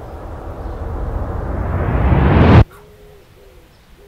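A dramatic rising whoosh sound effect: a noise swell that grows louder and higher for about two and a half seconds, then cuts off abruptly. Faint wavering low tones follow.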